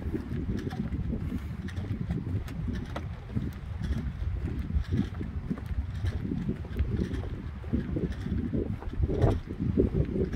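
Wind buffeting a phone microphone, a steady low rumble, with faint footsteps on wooden pier planks.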